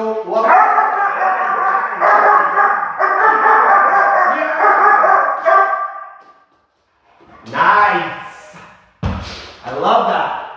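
A young shepherd puppy whining and yelping in long, drawn-out cries for about six seconds, the sound of a frustrated working puppy held back during heel training; after a short pause come shorter cries, with a thump about nine seconds in.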